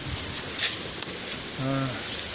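Steady rushing of a creek's flowing water, with a short rustle about half a second in.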